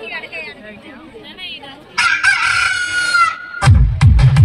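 A rooster crowing, one long crow lasting about a second and a half, played as a sound effect in the dance-music track over the PA. Near the end a loud electronic dance beat kicks in.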